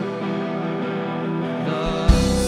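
Live indie rock band playing a quiet instrumental passage of held guitar and keyboard chords, the drummer working the cymbals with mallets and no drum beat.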